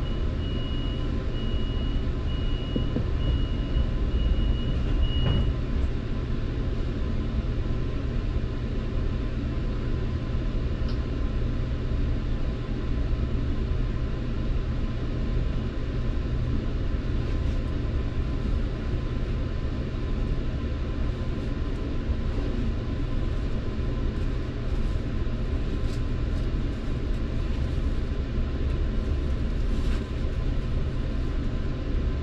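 Door-closing warning beeps on a Metrolink commuter train car, a quick even series of high beeps for about five seconds, ending in a thump as the doors shut. After that comes the steady low rumble and hum of the train, which begins to move near the end.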